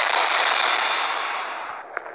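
A loud burst of dense noise that starts abruptly, holds for nearly two seconds and fades near the end.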